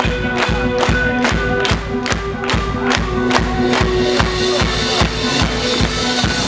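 Punk-rock band playing live: drums beating about four times a second over bass and held chord tones.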